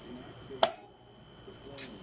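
Wooden multi-wire soap cutter pressed down through a soap loaf, with a sharp click about half a second in as the wire frame comes down, and a lighter click near the end. A faint steady high whine runs underneath.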